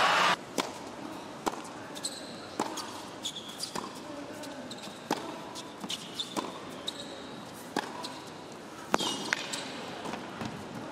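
Tennis ball struck by rackets and bouncing on an indoor hard court during a rally, a sharp pock about once a second, with short high sneaker squeaks on the court surface between shots.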